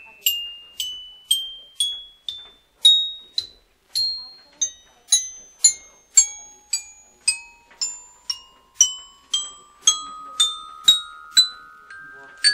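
Countdown timer's glockenspiel-like chime notes, struck about twice a second and each ringing briefly, stepping upward in pitch; about halfway the notes drop much lower and begin climbing again.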